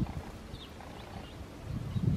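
A small bird bathing in shallow water: faint light splashes and flicks over a low rumble of wind on the microphone.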